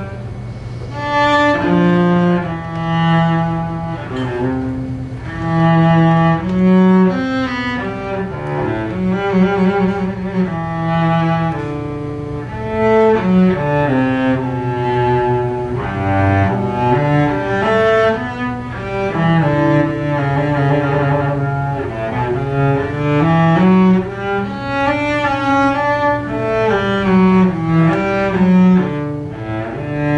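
Solo cello played with the bow: a melody of moving notes, with vibrato on some held notes.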